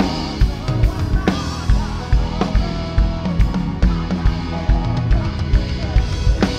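Live band music with the drum kit to the fore: regular kick drum and snare hits with cymbal crashes, over held chords from the rest of the band.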